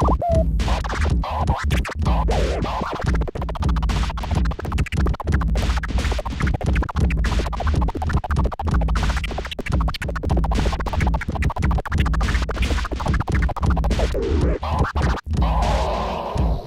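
Vinyl record scratched by hand on a turntable, the sound rapidly chopped in quick back-and-forth cuts, with steady bass underneath.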